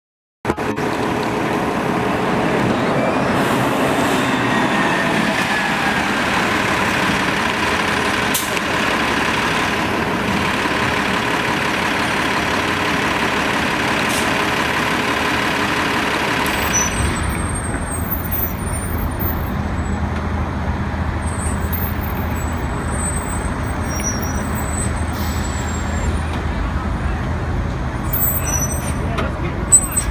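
City street traffic with a New Flyer Xcelsior articulated bus driving through, a steady engine whine over the traffic noise. About 17 seconds in the sound changes to a city bus running close by with a low rumble.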